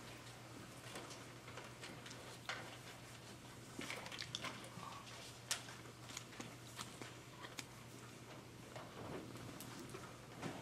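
Quiet room tone in a hall: a steady low hum with scattered faint clicks and rustles from a waiting audience, the sharpest click about five and a half seconds in.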